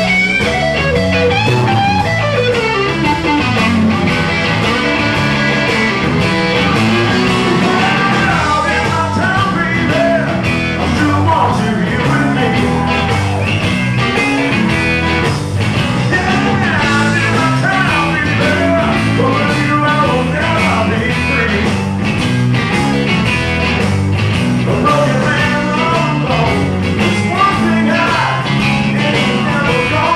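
Live blues-rock band playing loudly and steadily: electric guitars over bass guitar and drums.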